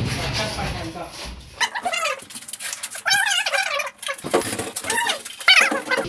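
A dog whining and yelping in three short bouts. Before it, noise from the metal door panel being wrenched loose fades over the first second or so.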